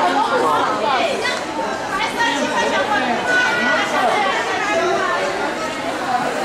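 Chatter of many people talking at once, overlapping voices with no single one standing out.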